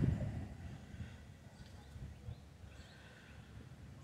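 Quiet outdoor ambience: a low steady rumble with a few faint, short high chirps.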